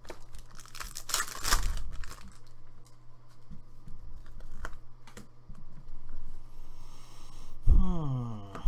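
Foil wrapper of a Prizm football card pack torn open with a crinkly rip about a second in, followed by the rustle and light clicks of the cards being handled and flicked through.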